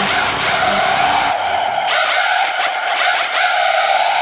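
Industrial techno track at a breakdown: the kick drum and hi-hats drop out about a third of the way in, leaving a loud, steady, harsh high tone held over the silence in the low end.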